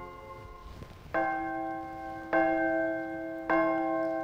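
A bell struck three times, about a second apart, each stroke ringing on and fading under the next. It is the altar bell rung at the consecration of the Mass, marking the elevation of the host.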